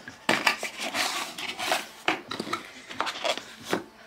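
A cardboard perfume box being opened by hand, with a string of sharp clicks, scrapes and paper rustling as the box and its card insert are handled.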